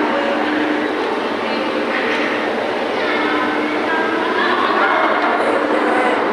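Indistinct voices over a steady, noisy din with a faint low hum.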